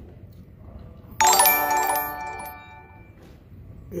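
A live-stream donation alert chime marking a $10 Super Chat: a sudden bright chord of several held tones about a second in, fading away over about two seconds.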